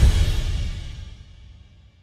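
Title-card music sting: a final bass-heavy electronic hit at the start that rings out and fades away over about two seconds.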